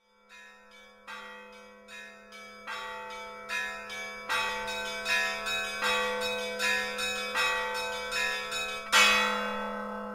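Bells struck in an even series, about one strike every 0.8 seconds, over a steady low held tone. The strikes grow louder, and the loudest comes near the end and rings on.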